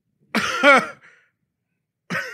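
A man clearing his throat once, a short rasp that turns voiced, lasting about half a second.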